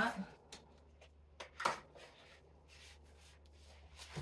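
Brief handling sounds of paper and cardboard as a card is lifted out of a large box. There are a few light clicks in the first second and a louder rustle about one and a half seconds in, then only a low steady hum.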